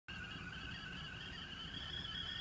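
Whistling kettle sounding at the boil: a steady, high whistle that wavers slightly in pitch.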